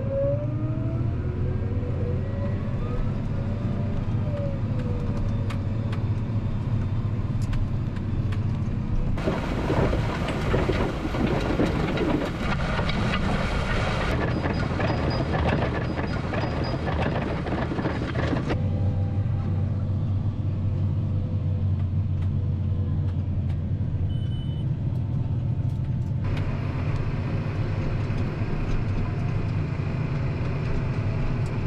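Case IH tractor engine running steadily under load while pulling a disk harrow. For about nine seconds in the middle the steady hum gives way to a louder rushing noise, and the hum comes back after that.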